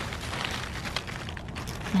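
Low rustling and handling noise among zucchini leaves, with a few faint crackles.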